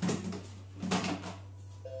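Plastic lid of a Monsieur Cuisine Connect food processor being set back onto its stainless-steel bowl: a clunk at the start and another about a second in. A short electronic beep from the machine starts just before the end, over a steady low hum.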